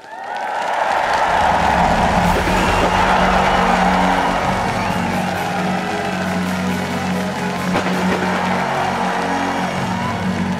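Music swells in suddenly, over steady low held notes, with a large crowd cheering and applauding.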